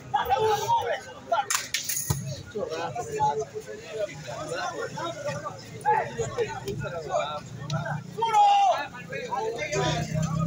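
Men's voices talking and calling out across an outdoor ecuavolley court, with a few sharp knocks about a second and a half to two seconds in.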